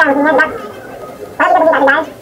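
A man speaking, in two short phrases with a brief pause between them.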